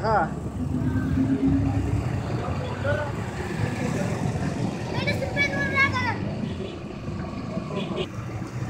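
A steady low engine-like rumble, like traffic, with indistinct background voices; a single raised voice rises out of them for about a second near the middle.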